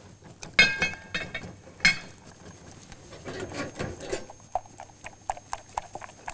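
Whisk beating eggs into a chocolate-and-cream mixture in a stainless-steel saucepan: rhythmic clicking and knocking of the whisk against the pan, with two ringing metallic knocks about half a second and two seconds in.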